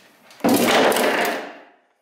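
Cut-out sheet-steel spare wheel well from a Mk6 Ford Fiesta dropped onto a concrete floor: one loud metallic crash about half a second in that dies away over about a second.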